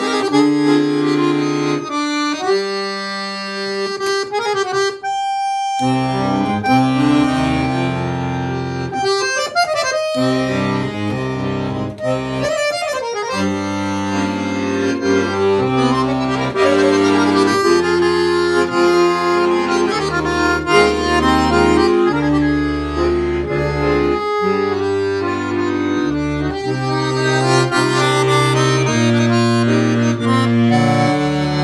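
Giulietti piano accordion played solo: a melody on the treble keys over held chords and a bass line on the left-hand buttons, the bass notes changing every second or so.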